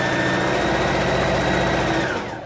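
Electric sewing machine running at a steady speed, its motor humming evenly as it stitches through layered fabric.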